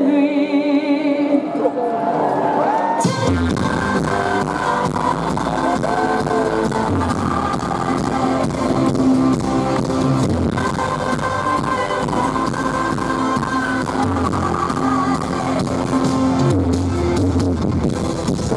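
Live pop music from an arena concert: a woman's held, wavering sung notes over piano, then about three seconds in the full band comes in with drums and bass and plays on steadily, with melodic vocal lines over it.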